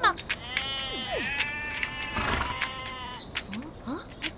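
A horse whinnying: one long call lasting about three seconds.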